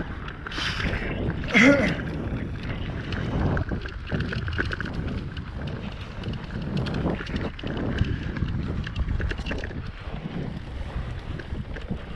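Wind rushing over a bike-mounted camera microphone and tyres rolling on a dirt trail while riding a mountain bike, with small rattles and clicks from the bike over bumps. A brief voice sounds early on.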